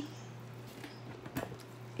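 A metal fork stirring paprika and turmeric into vegetable oil in a glass, faint, with a few soft clicks of the fork against the glass about a second in.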